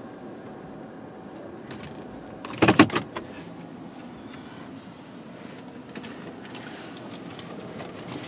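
Steady low hum heard from inside a car in an automatic car-wash bay before the wash cycle starts. About two and a half seconds in comes one brief, loud mechanical burst lasting about half a second.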